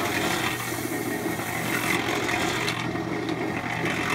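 Small Harbor Freight 1.25 cubic foot electric cement mixer running with a steady motor hum, its drum turning a concrete mix while a hose nozzle sprays water into it.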